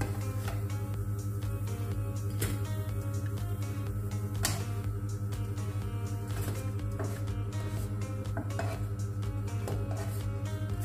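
Background music, with a few sharp clicks and scrapes of a spatula against a frying pan as pancakes are lifted out; the loudest click comes about four and a half seconds in.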